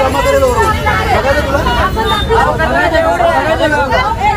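Several people arguing heatedly at once, their loud voices overlapping, over a steady low rumble.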